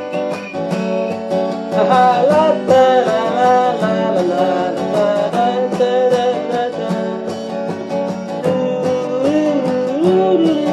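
Acoustic guitar playing a steady rhythm, with a man's voice singing a drawn-out, wavering melody over it from about two seconds in.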